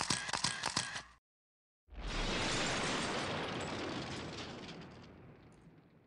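Edited sound effect for an outro title: a rapid rattle of sharp pops lasting about a second, then after a short gap a sudden boom with a deep rumble that fades slowly over about four seconds.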